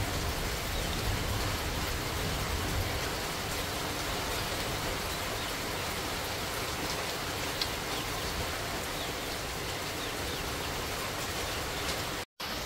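Heavy rain falling steadily: an even hiss with a few faint drip ticks.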